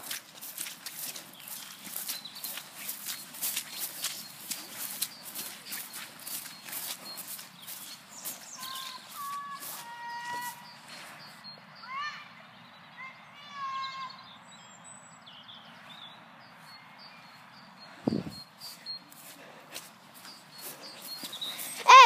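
Footsteps swishing through long wet grass, a steady run of crunches for the first eight seconds or so. Then a series of short pitched calls from birds in the field, with faint high chirping after them and a single dull thump near the end.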